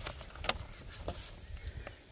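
Paper pages of a booklet being turned, a few crisp paper rustles and snaps over a low steady rumble.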